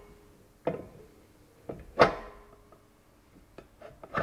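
Metal casing and ring clamp of a centrifugal pump being fitted onto its bell housing: a few metal knocks and clinks, the loudest and sharpest about two seconds in with a short ring after it, and lighter ticks near the end.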